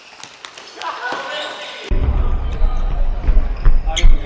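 Futsal play in an echoing sports hall: sharp thuds of the ball being kicked and bounced on the wooden floor, with players calling out. About halfway in the sound jumps louder, with a heavy low rumble under the ball thuds.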